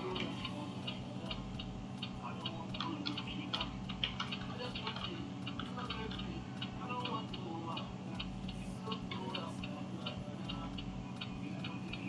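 Rapid light clicking, several clicks a second and fairly even, over a steady low electrical hum, with faint voices in the background.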